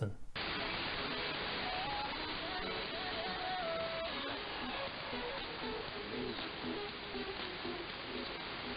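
Weak AM shortwave signal on 25.9 MHz played through an online SDR receiver: steady static hiss with faint snatches of music and voice beneath it, the audio dull with no treble. The station is thought to be the BBC World Service, but this is not confirmed.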